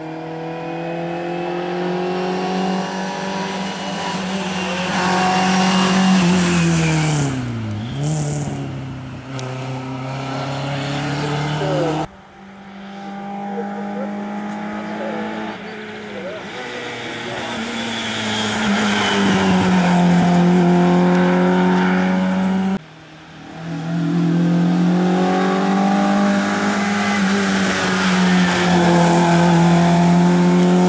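Group A rally cars on a hill climb, one after another, engines revving hard with the pitch climbing and falling back. About eight seconds in, one car passes with a sweeping drop in pitch. The sound cuts off abruptly twice as one car gives way to the next.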